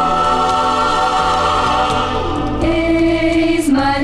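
Christian choral music: sung voices holding long, sustained notes over soft accompaniment, with a stronger sung line coming in about two-thirds of the way through.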